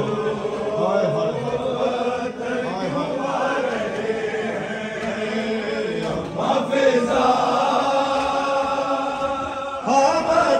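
Crowd of men chanting a Shia mourning noha in unison, led by a male reciter on a microphone; the massed voices grow louder a little past halfway.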